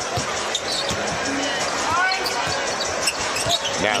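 A basketball dribbled on a hardwood arena court: repeated low bounces at roughly two a second over steady crowd noise, with a couple of brief shoe squeaks about halfway through.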